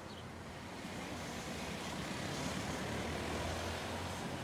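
Steady outdoor background noise: a low rumble with a soft hiss over it.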